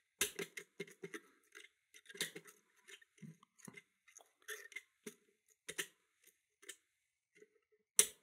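Pick working the levers of a Yale 5-lever mortice lock: a run of small irregular clicks and scrapes as the levers are lifted and spring back under heavy tension. The levers keep making noise without binding, so the lock does not set or open.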